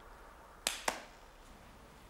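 Two sharp hand claps, about a quarter of a second apart.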